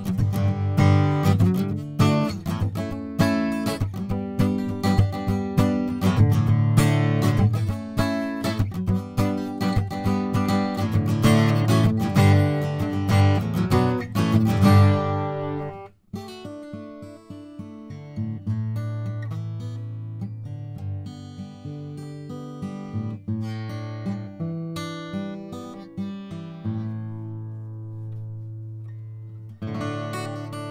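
Yamaha FG800VN solid-spruce-top dreadnought acoustic guitar played solo: brisk, loud strummed chords for about fifteen seconds, then after a sudden break, softer picked single notes and arpeggios that ring on.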